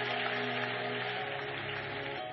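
Congregation clapping over sustained musical chords, the chord changing about a second in.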